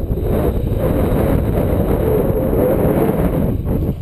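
Wind from paragliding flight buffeting an action camera's microphone: a loud, gusting low rumble that eases briefly near the end.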